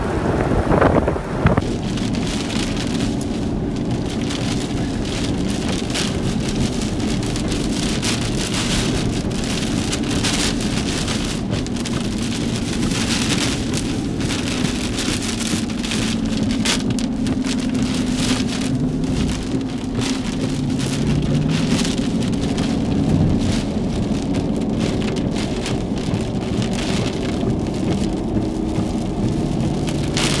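Heavy rain pelting a moving vehicle's roof and windshield, heard from inside the cabin as a steady dense patter of drops, under a low engine and road drone that rises and falls in pitch around the middle.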